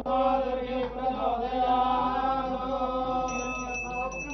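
Hindu priests chanting Sanskrit mantras with long held, slowly wavering notes. About three seconds in, a steady high ringing joins, a ritual hand bell being rung during the aarti.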